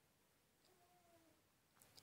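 Near silence: room tone, with one faint, short pitched call about a second in and a soft tick near the end.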